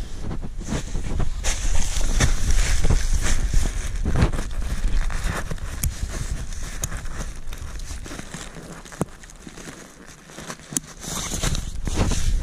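Nylon tent fabric rustling and handling noise close to the microphone, with a few sharp clicks, as a metal ground-cloth corner clip is hooked onto the tent's corner ring.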